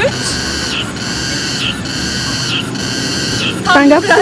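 Cicadas buzzing in a steady high drone that swells in regular pulses about once a second.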